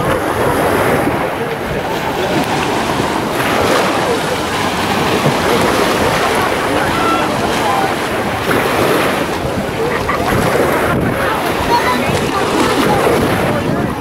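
Small waves washing up and breaking along a sandy shore, with wind on the microphone and the background chatter of a crowded beach.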